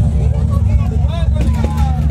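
Heavy bass of electronic dance music from a party sound system, with people's voices talking close by over it.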